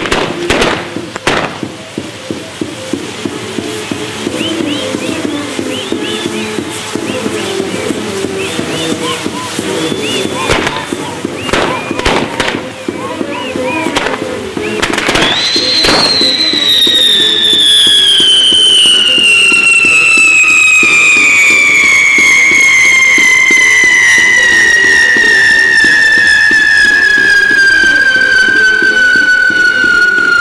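A fireworks castillo burning: repeated cracks and pops of spinning and bursting pyrotechnics with music playing underneath. About halfway through a loud whistling firework starts and keeps whistling, its pitch falling slowly and steadily.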